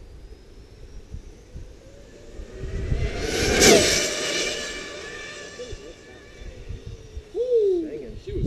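Arrma Limitless RC speed car on 8S power making a flat-out pass-by at about 145 mph. The electric motor's whine rises as it closes in, peaks with a whoosh as it passes about three and a half seconds in, then drops in pitch and fades as it runs away down the track.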